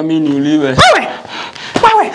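Raised human voices in a scuffle: a drawn-out cry that breaks off just under a second in, followed by two short, sharp shouts about a second apart.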